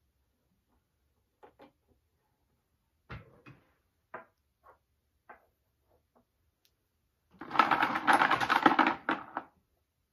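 Wooden toy blocks being handled and set down on a wooden sideboard top: scattered light clicks and knocks. About seven seconds in comes a loud rattling clatter lasting about two seconds.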